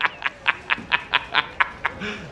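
A man's staccato laugh, a rapid run of short 'ha's at about four or five a second, from a film clip.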